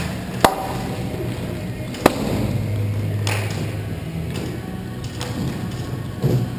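Two sharp cracks of a hockey puck or stick hitting something, about a second and a half apart, the first ringing briefly, over steady background music with a low bass.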